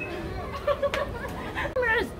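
Indistinct chatter of girls' voices, with two brief sharp sounds a little under a second in and a louder vocal exclamation near the end.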